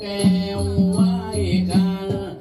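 Southern Thai Nora ritual music: a voice chanting in sliding, wavering pitch over a steady drum beat of about two and a half strokes a second, with small high ticks in time.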